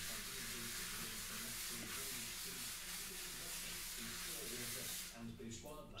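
Plastic devilling float, its screw tip just proud of the face, rubbed over fresh sand-and-cement render: a steady scratchy hiss that fades out about five seconds in. The rubbing compresses the render and scores a scratch key into it for a skim coat.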